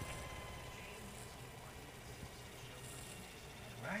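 Faint steady hum with a thin high whine from an old Century repulsion-start induction motor, dying down a little, after a run in which its rotor rubbed the inside of the casing.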